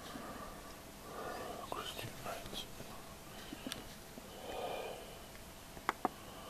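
A man's faint, indistinct voice, low and barely voiced, with a few small handling clicks and one sharper click near the end.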